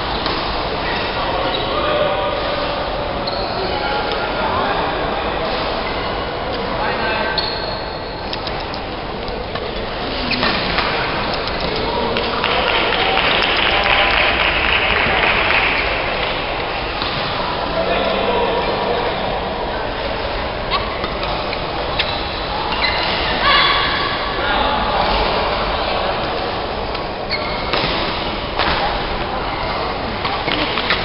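Badminton rallies: rackets striking shuttlecocks in sharp, irregular pops, with indistinct chatter of players across a busy hall.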